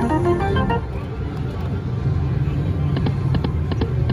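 Video slot machine's electronic win jingle ending about a second in. It gives way to the low whirring sound effect of the reels spinning, with a run of sharp ticks near the end as the reels stop.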